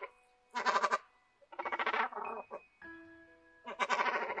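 Cormorant giving three harsh, guttural calls, each about half a second to a second long, over soft background music.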